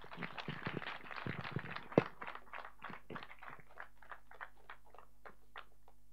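Audience applauding, the clapping dense at first, then thinning to scattered single claps and stopping about five and a half seconds in.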